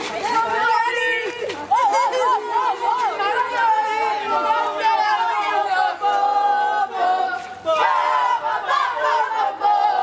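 A group of children shouting and cheering together in high voices, many at once, with some sing-song chanting: a winning team celebrating.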